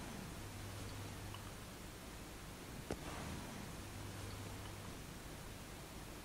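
Amplified playback of a home recording's background noise: a steady hiss with a low hum, and a single faint click about three seconds in.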